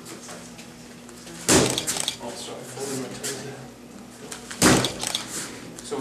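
Two sharp smacks of a boxing-gloved punch landing on a handheld Thai pad, about three seconds apart, each followed by a few lighter knocks.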